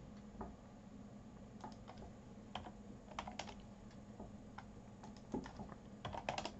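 Faint, irregular taps of a computer keyboard, a few scattered clicks every second or so, as a value is keyed into a field.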